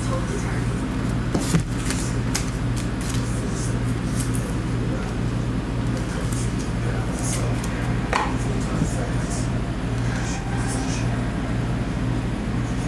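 Hands sorting a stack of chrome-finish trading cards: light slides and scattered clicks of card against card, over a steady low electrical hum.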